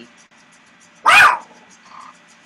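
A dog barks once, a single short, loud bark about a second in.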